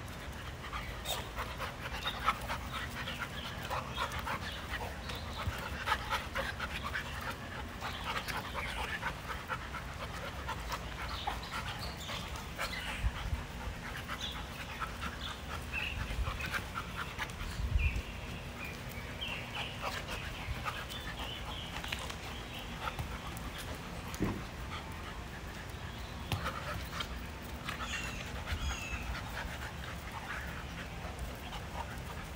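Two dogs, a black Labrador and a brindle bulldog puppy, panting hard while they play-wrestle, with scuffling and a few low thumps.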